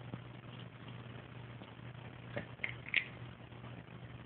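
A French bulldog chewing at a sunflower seed: three or four faint short clicks close together a little past halfway, over a low steady hum.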